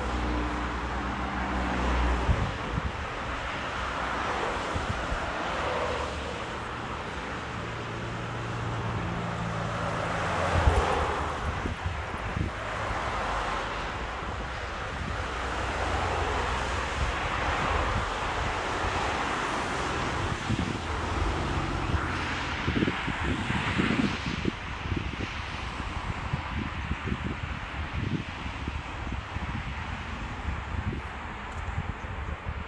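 Car interior driving noise: a low engine hum that shifts in pitch under steady tyre and road hiss, with a single knock about eleven seconds in and some crackling in the last third.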